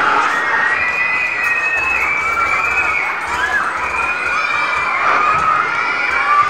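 A crowd of children shouting and cheering, with several long, high-pitched cries held above the din.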